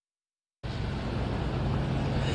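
Dead silence for about half a second at an edit, then steady outdoor street noise with an even low hum underneath, like a vehicle engine running nearby.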